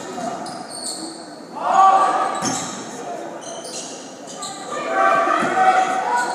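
A basketball game on a hardwood gym floor: the ball bouncing, sneakers squeaking and players' voices calling out, loudest about two seconds in and again near the end.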